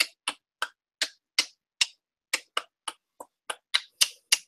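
Hand percussion struck in a steady beat, sharp clicking strikes about three a second, each with a short ring.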